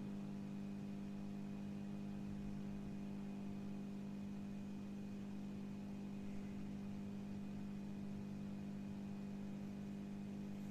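A faint, steady electrical hum: one constant low tone with its overtones over a light hiss, unchanging throughout.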